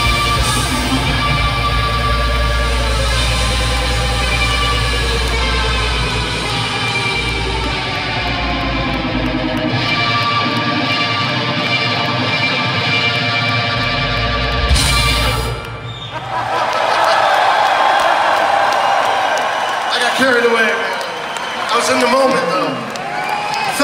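Live rock band holding a ringing, sustained guitar chord over bass until it cuts off about three-quarters of the way through. The crowd then cheers and shouts.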